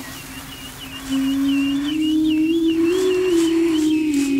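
Ethno-electronic music: a strong sustained low note comes in louder about a second in and glides slowly up and back down, with a thin high warbling line above it.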